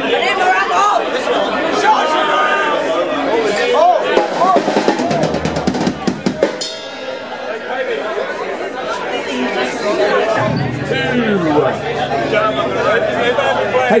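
Drum kit played loosely between songs, with scattered snare, bass drum and cymbal hits and one sharp loud hit about halfway, over crowd chatter. A low steady note comes in about three quarters of the way through.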